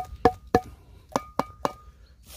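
A tin can of thick wet cat food knocked six times, in two sets of three, each knock with a short metallic ring. The food is sticking inside the can and is being shaken loose onto the tray.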